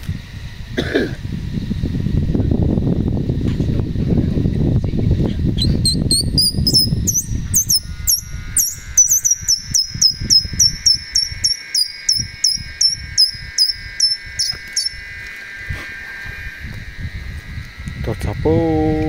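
Forest insects calling: a fast run of high, descending chirps, about three a second, over a steady buzzing drone, following several seconds of low rustling rumble.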